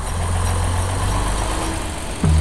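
Heavy bus diesel engine idling with a deep, steady drone.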